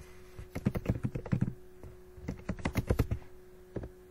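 Typing on a computer keyboard: two quick runs of keystrokes about a second each, with a short pause between.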